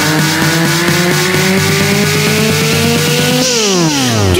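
Electro house track in a build-up: a synth riser climbs steadily in pitch over a quick beat, then sweeps sharply down about three and a half seconds in.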